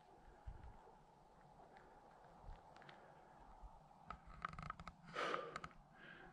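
Near silence, with a few faint clicks and a short, faint rustle of noise about five seconds in.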